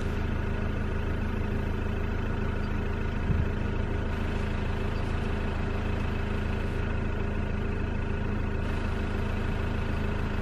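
A campervan's engine idling steadily, heard from inside the vehicle, with one brief low thump about three seconds in.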